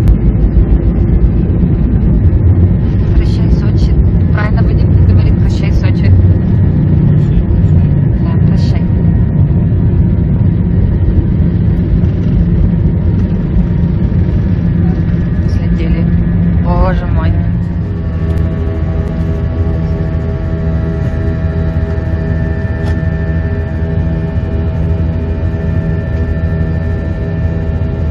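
Inside an airliner cabin during takeoff: the loud rumble of the takeoff roll with the engines at full thrust. About 18 seconds in the rumble eases as the plane lifts off, and steady engine tones carry on into the climb.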